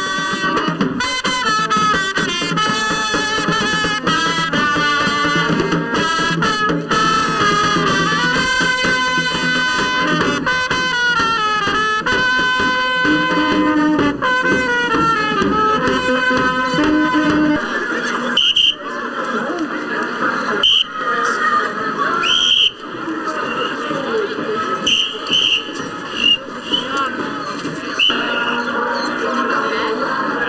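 Carnival street band of brass horns, saxophone and drums playing a tune. After about 18 seconds it gives way to a noisier mix of voices with several short high-pitched blasts.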